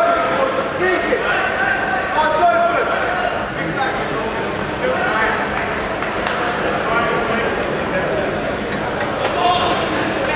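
Indistinct voices of several people talking at once in a large, echoing sports hall.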